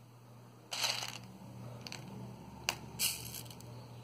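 Small handling noises from craft work off-camera: two short rustles, about a second in and near three seconds, with a single sharp click between them, as craft materials are picked up.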